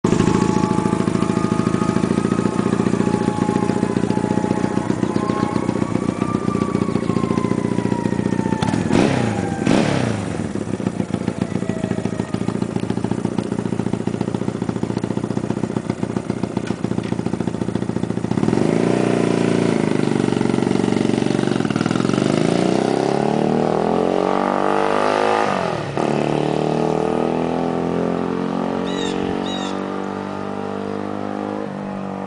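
1971 Honda CB175's parallel-twin engine idling steadily, with a brief sweeping sound about nine seconds in. About eighteen seconds in the motorcycle pulls away, revving up through the gears with the pitch rising and dropping at each of two shifts, then fading as it rides off.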